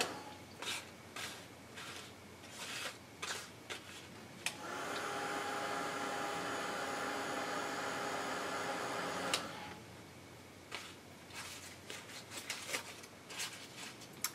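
Handheld craft heat gun switched on about four and a half seconds in, its fan running steadily with a faint whine for about five seconds before it is switched off. Either side of it come scattered soft clicks and rustles as the heat-distressed Tyvek and the metal hemostats holding it are handled.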